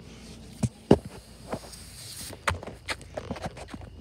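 A child going down a plastic playground slide and stepping off onto wood chips: scattered knocks and thumps, the loudest about a second in.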